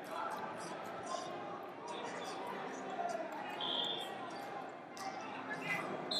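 Wrestling tournament hall: scattered thumps and brief squeaks of wrestlers on the mat, over a background of voices calling out.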